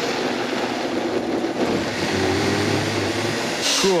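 Countertop blender running steadily as it purees strawberries and lemon, then cutting off near the end.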